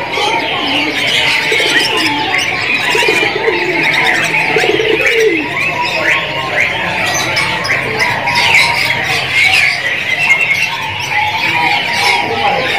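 Dense, continuous chorus of many caged birds chirping, with zebra doves (perkutut) cooing among them.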